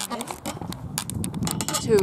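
Children's voices, with a word spoken near the end, over scattered short clicks and taps.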